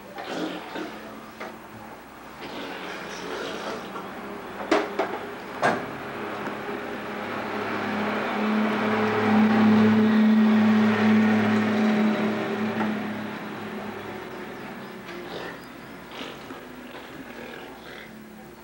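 A couple of sharp knocks of toys being handled, then a low motor hum that swells over several seconds and fades away again.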